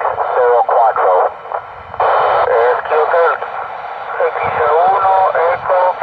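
A voice received over an FM satellite downlink through a mobile radio's speaker, thin and narrow-band over steady hiss, with a short stretch of bare hiss between phrases.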